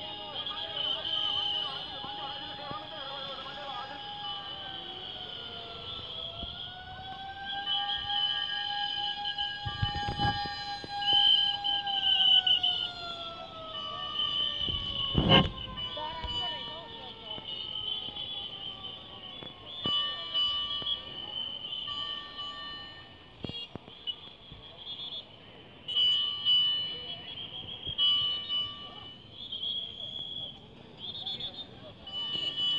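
Fire engine siren wailing, its pitch holding, dipping and rising, then sliding slowly down over several seconds, with crowd voices around it. Two sharp knocks come about ten and fifteen seconds in, the second the loudest sound.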